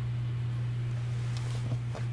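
A steady low hum under faint room noise, with a couple of faint clicks near the end.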